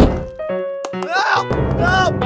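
Cartoon sound effects over music: a loud thunk as the round pod's hatch shuts, a few short chirpy squeaks, then from about one and a half seconds a steady rushing noise as the pod lifts off.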